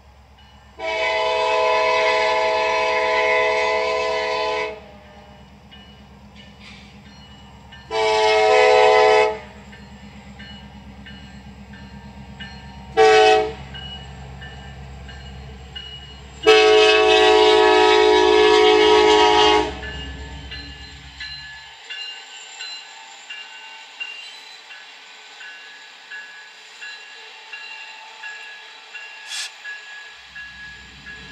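Freight locomotive air horn sounding the grade-crossing signal: two long blasts, one short and a final long one, each a chord of several tones, over a low rumble that stops suddenly. After the horn, faint clicking as the train's cars roll through the crossing.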